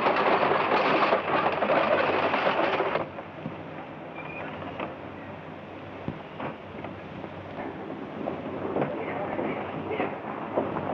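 Horse-drawn stagecoach starting off: hooves and wheels clatter loudly for about three seconds, then the sound drops abruptly to a much quieter background with a few scattered knocks.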